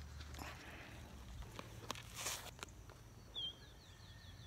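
Faint handling noise from a phone held close to the face: scattered clicks and a short rustle a little after two seconds, over a low steady hum. A short high chirp comes near the end.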